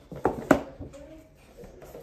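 Paper gift bag being shaken with playing cards inside, rustling, with two sharp crinkles near the start.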